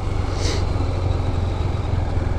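Husqvarna Svartpilen 401's single-cylinder engine running steadily as the bike is ridden slowly, with a brief hiss about half a second in.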